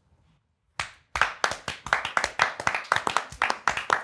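Near silence for about a second, then a few people clapping their hands together in a quick, uneven run of claps.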